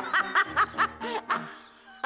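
A woman laughing heartily in a quick run of short bursts, about five a second, tapering off in the second half.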